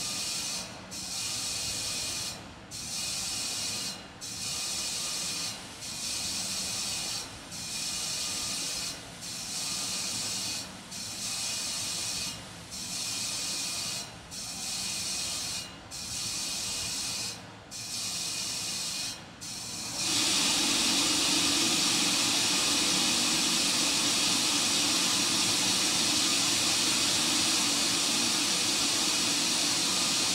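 Gas venting from the Terran 1 rocket on its pad while its cryogenic propellant tanks are topped off: a hiss that pulses on and off about every second and a half, then turns into a steady, louder hiss about twenty seconds in.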